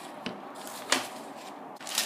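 Quiet kitchen handling as cut wholemeal dough rounds are lifted off a wooden board and set on a plate lined with baking paper, with a faint click near the start and a sharper tap about a second in.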